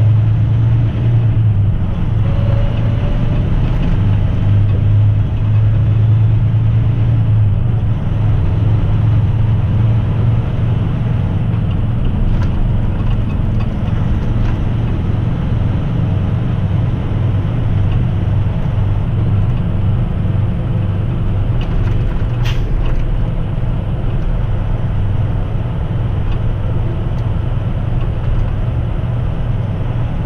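Heavy truck's diesel engine and tyre noise heard from inside the cab while driving, a loud, steady low drone. One sharp click about three-quarters of the way through.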